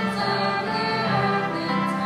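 A group of voices singing a hymn in sustained notes, accompanied by violins and a cello.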